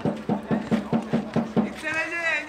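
A person laughing: a quick, even run of about eight short voiced pulses, four or five a second, that stops shortly before the end.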